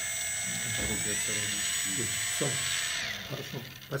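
Small electric motor on a demonstration test bench running with a steady high-pitched whine. Its pitch rises about a second in as the potentiometer raises the voltage and speed, then falls and stops near the end. Low voices murmur underneath.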